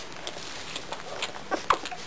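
Nine-day-old German shepherd puppies suckling at their mother, with many small wet clicks and smacks. One puppy gives a brief squeak about three quarters of the way in.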